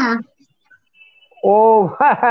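A girl's voice speaking over a video call: a phrase ends just after the start, then after a short pause she starts again about a second and a half in with a quick run of syllables.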